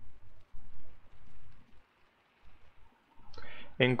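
Faint scattered clicks over quiet room tone, with a nearly silent stretch before a man starts speaking near the end.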